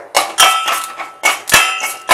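Steel spoon stirring in a small stainless steel pot, knocking against the pot in repeated clangs, about three a second, each leaving a short metallic ring.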